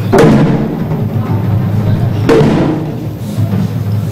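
Drum-led music: two heavy drum strikes about two seconds apart, one near the start and one a little past the middle, over a steady low hum.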